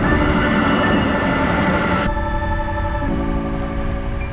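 Background music of steady held chords over the noise of a passenger train at a station platform. The train noise cuts off suddenly about two seconds in, leaving the music over a low rumble.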